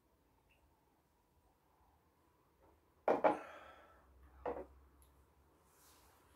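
Almost silent at first, then two sudden knocks: one about three seconds in with a short trailing tail, and a shorter one a second and a half later. They fit two glasses being set down on a table after sipping whisky.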